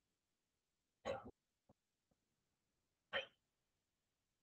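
Two short throat sounds from a person, such as a hiccup or small cough, about two seconds apart, with two faint clicks between them.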